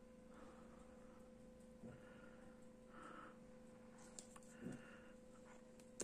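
Near silence: faint room tone with a steady low hum and a few soft handling noises.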